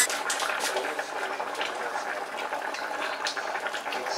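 Pot of pasta water at a rolling boil with fettuccine cooking in it: a steady bubbling hiss with many small pops.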